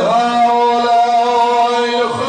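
A zakir's chanted recitation: one man's voice holding a single long, steady sung note into a microphone.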